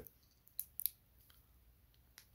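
Near-quiet background with a few faint, short clicks, clustered from about half a second to a second and a half in.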